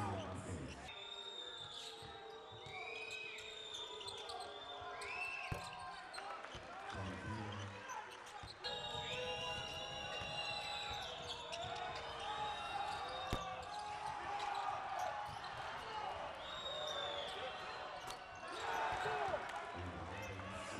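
Basketball game sound on an indoor hardwood court: sneakers squeaking in many short high chirps as players move, with the ball bouncing, under arena voices.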